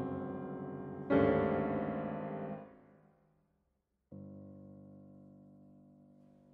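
Solo grand piano playing slow, separate chords. A loud chord struck about a second in rings and is damped after about a second and a half, followed by a brief gap of near silence. A softer, lower chord comes in at about four seconds and is left to fade.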